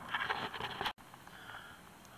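Faint irregular scraping and rustling that cuts off abruptly about a second in, followed by a quiet steady hiss.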